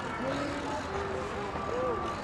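Indistinct background voices over a steady rumble and hum.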